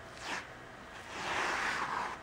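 Insul-Bright insulated batting being peeled off a sticky Cricut cutting mat: a soft tearing rustle from about a second in, after a faint tap.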